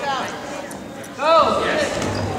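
People's voices calling out in short, rising-and-falling shouts, the loudest a little over a second in.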